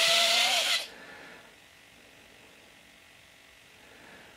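A pair of RC Aerodyne electric retracts whining as their motors swing the two wheel legs over, the pitch rising slightly before the motors stop under a second in.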